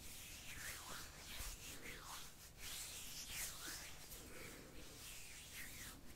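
A series of faint, soft swishes of hands making plucking motions close to the microphone.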